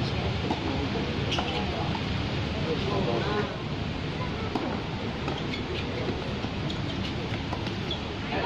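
Tennis ball struck by rackets a few times in a doubles rally, sharp hits over a steady background of outdoor noise and distant voices.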